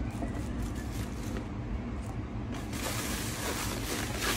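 Steady low hum of room noise with faint small clicks, and a rustling hiss that gets brighter about two-thirds of the way in, from something being handled at the table.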